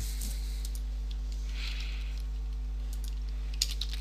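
Steady low electrical hum under a few faint, scattered clicks from a computer keyboard and mouse in use, with a small cluster of clicks near the end.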